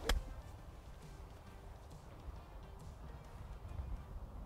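A single crisp strike of an iron club on a golf ball right at the start, followed by faint wind and outdoor ambience with quiet background music underneath.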